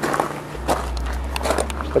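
Footsteps on gravel with scattered short clicks and knocks, and a steady low rumble from about half a second in.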